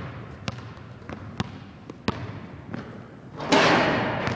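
Basketball bouncing on a hardwood gym floor, about five separate bounces at uneven intervals, each with an echo from the hall. Near the end a loud rushing noise comes in and is the loudest sound.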